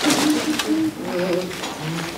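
Men's low voices murmuring as a group, with rustling of coats and shuffling movement.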